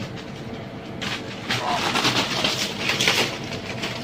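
A man climbing a slender tarap tree barefoot: irregular scraping against the bark and rustling, crackling leaves and twigs, starting about a second in and louder from then on.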